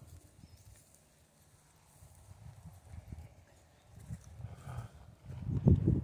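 Soft, irregular low thuds of a horse's hooves stepping on grass close by. Louder knocks and rubbing from the phone being handled come in the last second.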